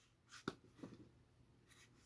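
Near silence with a few faint, brief taps and rustles of a paperback book being handled, about half a second in and again shortly after.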